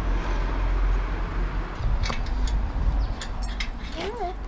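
Steady low rumble of city street traffic, with a few light metallic clicks in the second half from a spanner being fitted to a bicycle's rear axle nut.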